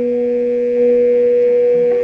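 A single electric guitar note sustaining through a Digitech Bad Monkey overdrive pedal, held steady with its overtones and swelling slightly about a second in.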